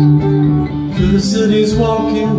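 Acoustic guitar played live, with steady sustained low notes under picked upper strings. The chord changes, with a brighter passage, about halfway through.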